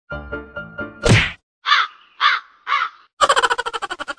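A loud sudden whack about a second in, followed by three identical harsh caw-like bird calls about half a second apart, set among music and comic sound effects.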